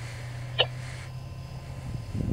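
Steady low drone of a moving car heard inside the cabin, with one short click about half a second in.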